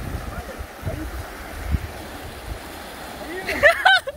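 Fast river rapids rushing, with a low, uneven rumble underneath; a man starts shouting near the end.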